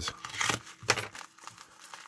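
Plastic postal mailer being slit with a hobby knife and torn open by hand: a few sharp crinkling rips in the first second, then fainter rustling.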